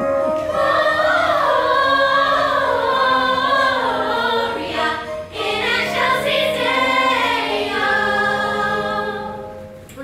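A chorus of young female voices singing together in a stage musical number, over musical accompaniment with steady bass notes. The singing swells in about half a second in, breaks briefly midway and fades near the end.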